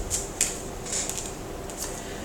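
Tarot cards handled as one is drawn from the deck: soft rustling with a few light clicks of card on card.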